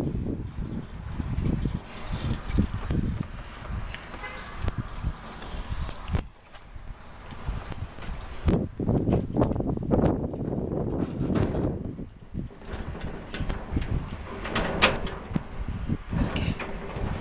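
Keys jingling and a padlock clicking and rattling against the metal latch of a corrugated roll-up storage unit door, over a steady low rumble.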